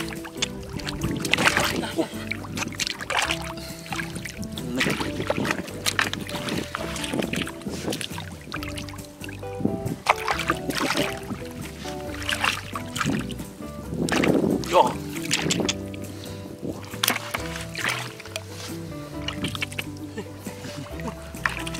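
Hands splashing and churning in shallow muddy water in irregular bursts while groping for fish, over background music with held notes.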